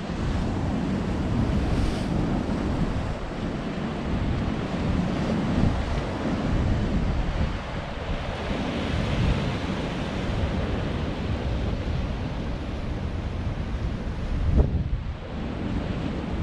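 Rough sea waves surging and breaking on rocks, with wind buffeting the microphone; the rush swells and eases in waves. A sudden loud thump near the end.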